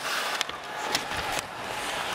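Ice hockey arena sound: steady crowd noise with skates scraping on the ice, and three sharp clacks of sticks and puck, the loudest about a second in.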